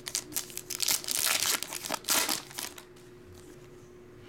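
Foil wrapper of a Topps Finest Flashback baseball card pack crinkling as it is torn open and the cards are pulled out. The crinkling stops about three seconds in.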